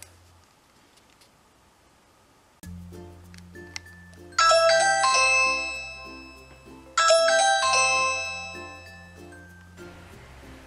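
Ring Chime Pro plug-in doorbell chime sounding its ding-dong tone twice, about two and a half seconds apart, each two-note chime ringing out slowly: a test of the doorbell ring alert. Light background music starts just before the first chime.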